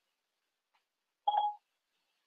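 A single short electronic chime from the iPad's Siri, a brief steady tone about a second and a quarter in, with silence around it.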